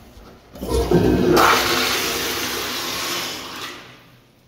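Commercial flushometer toilet flushing: a sudden loud rush of water about half a second in, then a steady hissing flow that fades out near the end.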